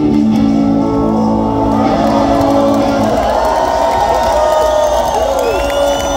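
An electric guitar's last chord ringing out, then a crowd cheering and whooping from about two seconds in.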